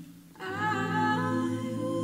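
College a cappella group singing unaccompanied: low voices hold a soft hummed chord, and about half a second in higher voices come in on top with a melody line.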